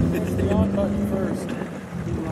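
Indistinct voices talking over a steady low hum, like an engine running in the background.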